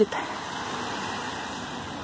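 Steady, even outdoor background hiss with no distinct events.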